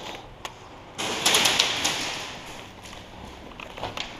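Airsoft guns firing: a sudden rattling burst of rapid clicks about a second in, fading over about two seconds, with a few single clicks after it.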